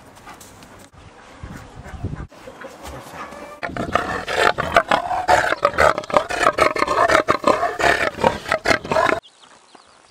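Farmyard poultry calling loudly and rapidly, a rough, dense chorus that starts about four seconds in and cuts off suddenly near the end.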